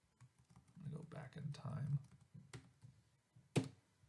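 Quiet, indistinct mumbling, then two sharp computer keyboard clicks about a second apart near the end.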